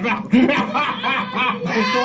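Cartoon character voices laughing on a Karl-Alfred story cassette, right after a joke's punchline.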